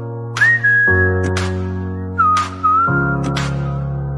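Opening of a pop song: sustained keyboard chords that change about every two seconds, a high whistled melody sliding between notes, and sparse drum hits, with no singing yet.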